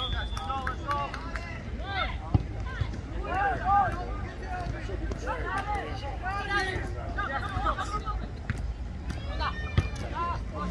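Players and sideline spectators shouting short calls across a soccer field during open play, over a steady low rumble. Two sharp thuds of the ball being kicked stand out, one about two seconds in and one near the end.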